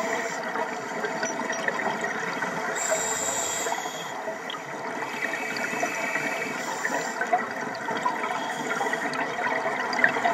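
Underwater sound picked up through a camera housing: scuba divers' exhaled bubbles rushing past and regulator breathing, over a steady crackling water noise.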